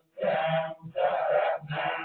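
Buddhist monks chanting in Pali, male voices holding each syllable for about half a second, with short breaks between phrases.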